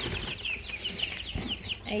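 Young chicks peeping: a steady run of short, high, falling cheeps, several a second.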